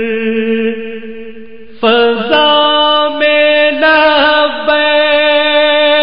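Wordless devotional vocal chanting between verses of a naat: long held notes with slight bends. A louder, higher part comes in about two seconds in and moves through several sustained notes.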